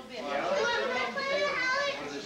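Children's high-pitched voices with indistinct chatter from the family around them.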